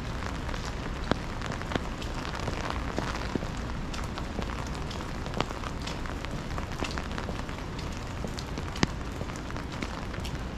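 Steady rain, with many sharp drop hits close by scattered through it and a few louder single ones, over a low continuous rumble.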